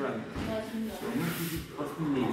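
Indistinct background voices in a gym, with a brief hiss about one and a half seconds in.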